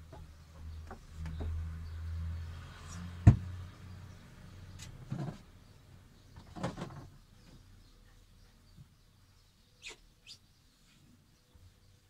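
Knocks and clicks of a camper fridge being cleaned and its contents handled, with one sharp, loud knock about three seconds in and a few softer ones after.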